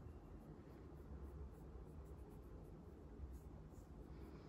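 Near silence: a faint low room hum, with faint rubbing of fingers spreading cream primer over the skin on the back of a hand.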